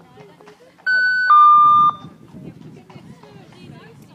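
Electronic two-tone beep, a higher tone stepping down to a lower, louder one, about a second long: the signal for a show-jumping round to start.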